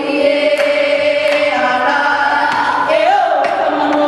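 Traditional Hawaiian chant for hula kahiko: several voices chanting together on long held notes, with a rising glide near the end. A few sharp percussive knocks sound over the chant.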